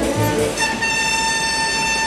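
Orchestral background music stops about half a second in. A car horn then sounds one long steady blast.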